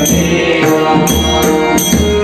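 Marathi devotional bhajan: voices singing over a harmonium, with a pakhawaj barrel drum and small hand cymbals (taal) keeping a steady beat of about two strokes a second.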